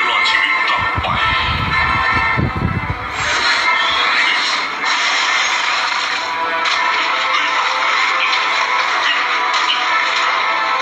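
Film soundtrack: dramatic music mixed with action sound effects, with a deep low surge about a second in that lasts about two seconds.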